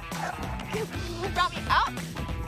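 Background music, with a French Bulldog giving two quick, high yips near the end while it plays tug.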